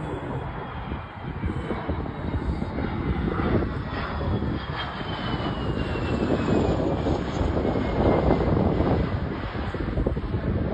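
Jet engine of a low-flying MiG-23 fighter: a loud, dense rumble that builds to its loudest about eight seconds in, with a thin high whine slowly falling in pitch as the jet passes.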